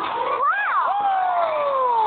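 A cartoon character's cry of wonder: a pitched voice that rises quickly, then slides down in a long falling glide.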